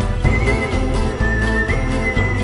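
Background music: a high, gliding lead melody over a steady bass and beat.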